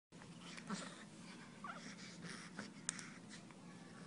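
Faint wheezy breathing and small noises from a newborn baby, with a brief wavering squeak a little before halfway through. Two sharp clicks come near the end.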